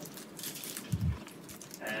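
A pause in speech with faint hiss, broken about a second in by one short, low thump on the microphone.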